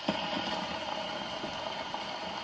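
Surface noise of a shellac 78 rpm record under the stylus in the lead-in groove: a steady hiss with light crackle, before the music begins.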